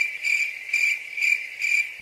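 Cricket chirping: a steady high trill that swells and fades about two to three times a second, with nothing else under it.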